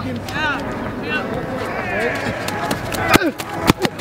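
Voices of players and coaches calling and shouting on an outdoor football practice field, with a few sharp knocks near the end.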